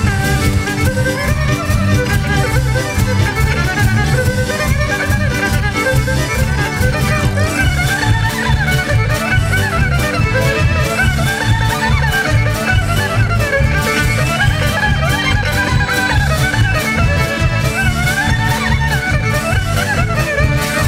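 Erhu (Chinese two-string fiddle) playing a solo melody with sliding pitch and vibrato, over an accompaniment with a steady, pulsing low end.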